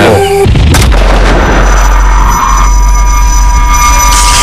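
A dramatic sound-effect stinger: a sudden deep boom about half a second in, followed by a sustained low rumble. A thin, steady high tone joins it in the second half.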